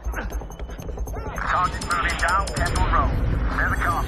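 Short shouts and cries from people being shoved aside, in two clusters, over loud action-film music with a low rumble.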